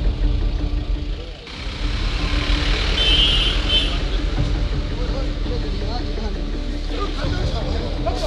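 A vehicle engine running with a steady low rumble under the voices of a crowd, with raised voices toward the end.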